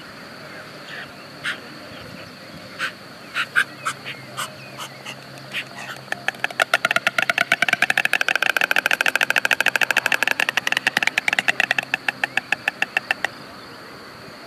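White stork bill-clattering at the nest: a few scattered wooden clacks, then a fast, continuous rattle of clacks for about seven seconds that cuts off suddenly. This is the pair's clattering greeting display.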